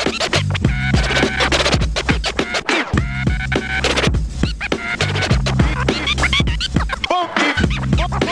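Vinyl records scratched by hand on turntables, pushed back and forth in quick rising and falling glides and chopped off and on with the mixer fader, over a looped bass-heavy hip-hop beat.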